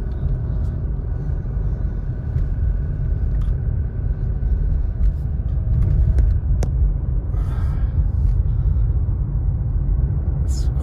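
Steady low rumble of a car driving, heard from inside the cabin: road and engine noise, with one sharp click about two-thirds of the way through.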